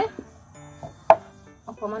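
A hand rubbing cooking oil over a round wooden chopping board, with one sharp knock on the board about a second in.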